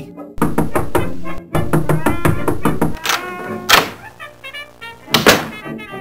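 Comedy underscore music with a fast run of knocks and thuds, then loud single thuds about three seconds in, again just after and near the five-second mark.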